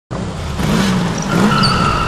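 A car's tires squealing on tarmac with its engine running underneath, a dense screech with a steady high note that sets in about halfway.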